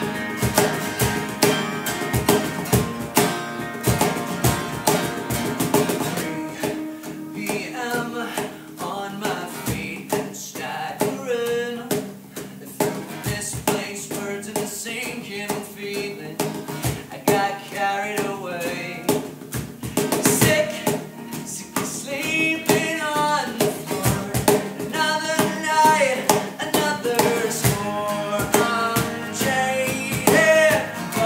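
Acoustic band performance: two acoustic guitars strummed over a cajón beat, with an electric guitar alongside. A male lead vocal comes in about seven seconds in and sings in phrases over the accompaniment.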